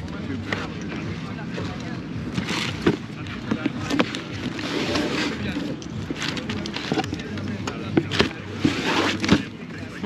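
Indistinct voices murmuring in the background, with scattered sharp knocks and rustles close to the microphone as cardboard shoe boxes and their tissue paper are handled.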